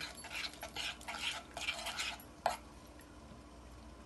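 A spoon stirring thin flour-and-water batter in a glass bowl, with irregular scraping and clinking strokes against the bowl. The stirring stops about two and a half seconds in with one sharper knock.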